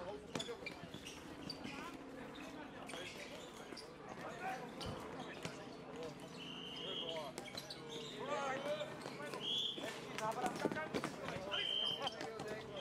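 Floorball play: plastic sticks clacking against the ball and court, with players shouting to each other in the second half. A few short high squeaks are heard, one about six and a half seconds in, one near nine and a half seconds, and one at the end.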